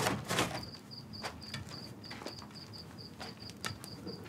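Crickets chirping steadily, a high pulsing chirp repeated several times a second, as night ambience. A couple of soft knocks or rustles near the start.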